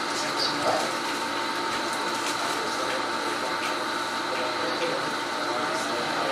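Steady hiss of room and recording noise with a faint, steady high-pitched whine and a few faint ticks.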